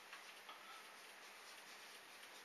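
Faint scratching and light ticks of a dry-erase marker writing on a whiteboard, over near-silent room tone.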